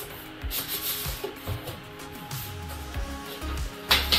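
Vinyl LP in a paper inner sleeve being slid out of a cardboard gatefold jacket, paper and card rubbing, with a sharp crisp rustle near the end. Background music plays underneath.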